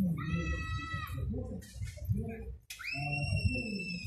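Two long, high-pitched whistle-like calls over a murmur of voices: the first level for about a second, the second sweeping up at about three seconds in and then holding.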